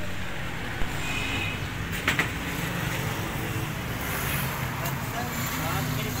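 Steady rumble of street traffic, with a sharp click about a second in and a knock about two seconds in.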